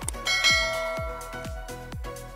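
A bell chime sound effect rings out about a quarter second in and fades over about a second, the 'ding' of a subscribe animation's notification bell being clicked. It plays over background music with a steady kick-drum beat of about two strokes a second.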